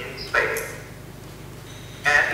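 A man's voice over a video call: one short word about half a second in, then a pause with a steady low hum.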